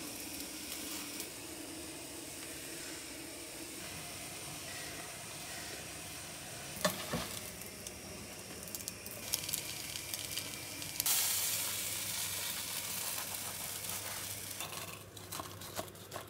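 An egg omelette frying in a pan, a steady sizzle, with a single knock of the spatula about seven seconds in. The sizzle turns louder and brighter about eleven seconds in, and a few clatters come near the end.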